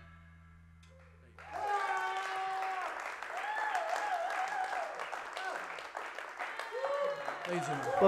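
A live audience clapping and cheering at the end of a rock song, with long whooping shouts over the applause. It starts about a second and a half in, after a low steady hum.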